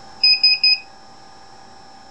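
Three quick electronic beeps from a digital magnetic stir plate's control panel as it is set to stir, over a steady hum of lab equipment.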